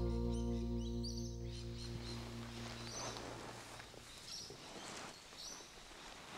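The last chord of a strummed acoustic guitar rings out and fades away by about halfway through. Short, high bird chirps sound every second or so throughout.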